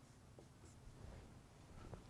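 Near silence, with faint strokes of a dry-erase marker writing on a whiteboard.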